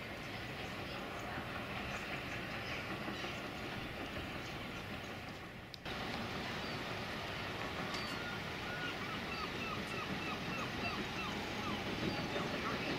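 Steady outdoor background noise, broken by a brief dip and sudden restart about halfway. In the second half a run of about ten short, repeated chirps, about three a second.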